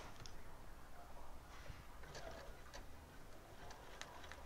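Sewing machine with a walking foot stitching slowly through a quilt sandwich: faint, uneven ticking over a low hum.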